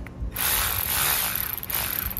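Cordless battery ratchet motor whirring steadily as it runs a valve body bolt down, starting about a third of a second in.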